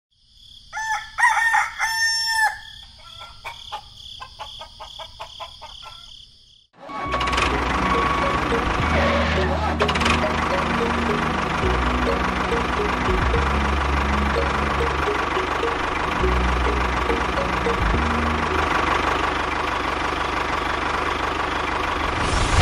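A rooster crows and clucks for the first six seconds or so. About seven seconds in, a steady, loud, dense sound sets in and holds, with a low bass line stepping in pitch and a short repeating melody above it.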